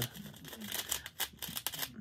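Small plastic zip-lock bags of diamond painting drills crinkling as they are handled and flexed, in a run of quick, irregular crackles and clicks.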